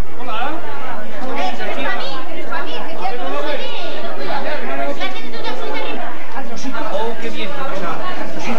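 Several people talking at once: lively, overlapping chatter of voices.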